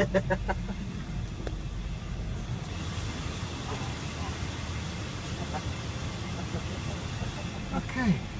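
A car engine running, heard from inside the cabin as a steady low rumble.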